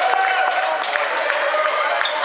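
Crowd of spectators calling out and cheering in an indoor basketball stadium during play, many voices mixing together.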